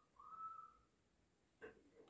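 Near silence, with a faint, short whistle-like tone in the first half-second and a soft tick near the end.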